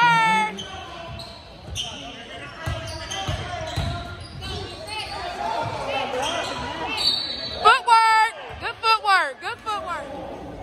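Basketball game on a hardwood gym floor: a ball being dribbled, with short high squeaks of sneakers on the court near the start and again in the last few seconds. Everything echoes in the gym.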